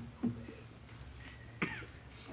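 Three short coughs from a person: one at the start, one a moment later and one near the end, over a low steady hum.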